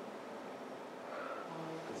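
Quiet room tone, a steady even hiss, during a pause; a faint, distant voice begins speaking near the end.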